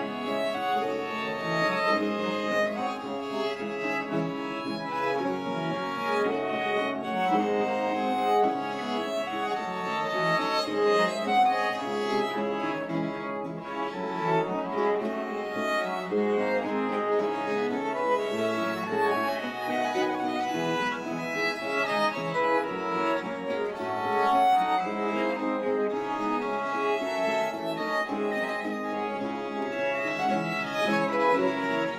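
Baroque string ensemble playing, violins over a cello bass line.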